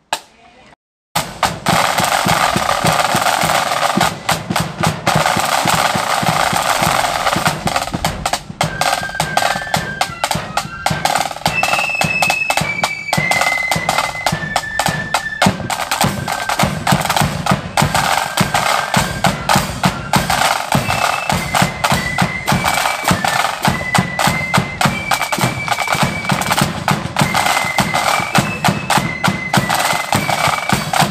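Marching flute band. The side drums start about a second in with a fast, rolling beat, and the flutes come in with a high, stepping tune about eight seconds later.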